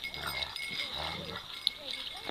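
Akita dogs growling in rough play as they wrestle: two low growls, each about half a second long.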